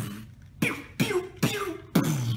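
A young man making 'bew' laser-gun noises with his mouth while playing a video game: about four quick 'bew's in a row, each starting sharply and dropping in pitch.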